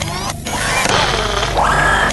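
Radio Maximum station ident: synthesized whooshes and rising sweeps over a steady low drone and music bed, with a rising sweep near the end.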